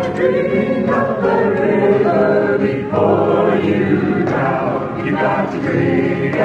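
Several voices singing together: a live group sing-along in a filk song.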